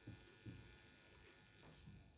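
Near silence: room tone with a couple of faint, brief marker strokes on a whiteboard, one about half a second in and one near the end.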